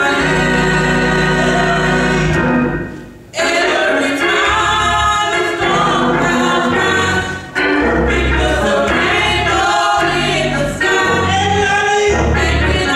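Small gospel choir singing with instrumental accompaniment of low sustained notes, briefly pausing about three seconds in.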